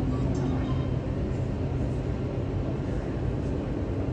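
Airbus A320neo's jet engines heard as a steady low roar as the airliner climbs away after takeoff.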